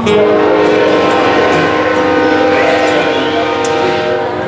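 Amplified acoustic guitars sounding a chord struck at the start and held, ringing on steadily with little decay.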